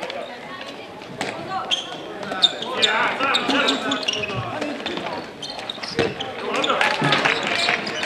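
Handball match on a wooden sports-hall floor: the ball bouncing and striking repeatedly, mixed with players' voices calling out on the court.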